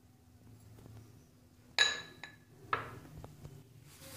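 A single sharp glass clink with a brief ring about two seconds in, followed by two lighter knocks: a small glass bowl knocking against glass.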